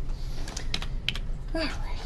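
A quick run of sharp computer keyboard clicks, about half a dozen in under a second, as the slides are advanced. A short spoken "all right" follows near the end.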